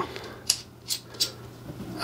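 The telescoping pan handle of a NEEWER GM27 fluid head being twisted to lock it after extending it, giving three short, faint ticks.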